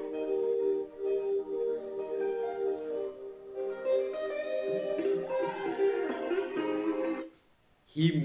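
Song music led by a plucked guitar playing a melodic passage over held notes, cutting off abruptly near the end when playback is paused.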